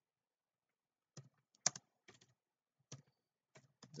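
Typing on a computer keyboard: a few scattered key clicks starting about a second in, one clearly louder than the rest.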